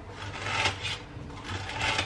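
Sandwich filling being stirred and scraped in a bowl: two slow scraping strokes about a second apart.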